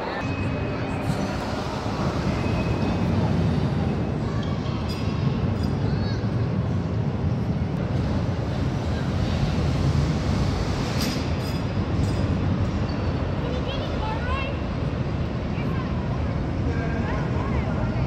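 Loud, steady din inside an indoor amusement park: a low rumble from rides and machinery under a wash of crowd voices, with a few short high-pitched cries about two-thirds of the way through.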